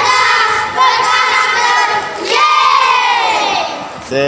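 A group of children shouting a cheer together in unison, in three long drawn-out calls, the last one falling in pitch.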